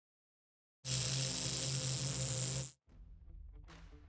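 Intro sound effect: a loud hissing rush that starts just under a second in, holds for about two seconds and cuts off abruptly, followed by soft plucked notes of intro music.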